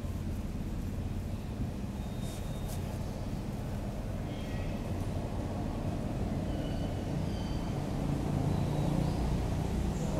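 Steady low rumble like a running engine, a little louder in the second half, with a few faint short high chirps midway.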